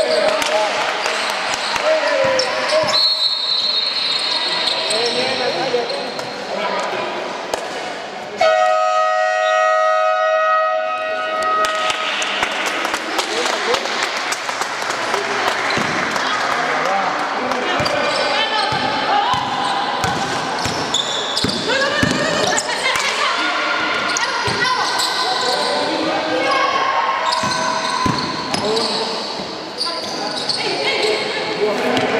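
Basketball game play in a large sports hall: a basketball bouncing on the hardwood court, with many short knocks and players' voices calling out. A brief high whistle sounds about three seconds in. A loud buzzer sounds for about three seconds from about eight and a half seconds in.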